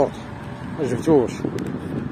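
A man's voice, a short utterance about a second in, over a steady low background rumble.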